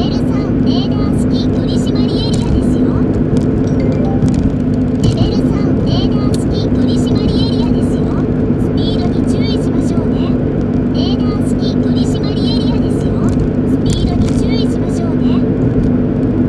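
A car driving at a steady cruise, heard from inside the cabin: a continuous engine and road-noise drone. Short, irregular high chirps and clicks come and go over it.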